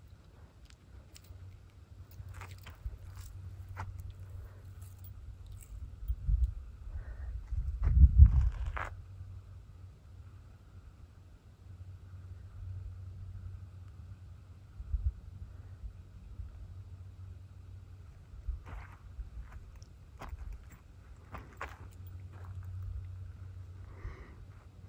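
Steady low wind rumble on the microphone, swelling into a stronger gust about eight seconds in, with scattered crunching steps on dry sandy ground.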